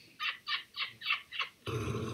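A person laughing in a quick run of about six short, breathy bursts. About two-thirds of the way in it gives way to a steady, louder background noise.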